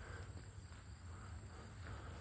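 Faint, steady high-pitched chorus of crickets over a low background rumble.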